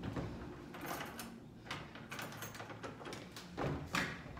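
Faint, scattered clicks and rattles of a key being worked in the lock of an old wooden door that will not open.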